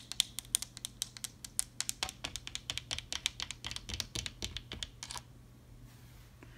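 Long fingernails tapping quickly and irregularly on the embossed surface of a chest of drawers, a dense run of sharp clicks that stops about five seconds in.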